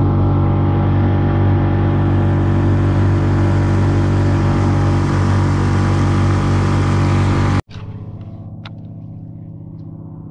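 Small outboard motor on a fishing kayak running steadily at speed. It cuts off suddenly about seven and a half seconds in, giving way to a much quieter steady hum.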